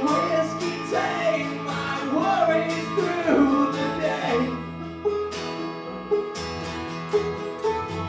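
Live bluegrass music: banjo, acoustic guitar, harmonica and upright bass playing together, with a man singing.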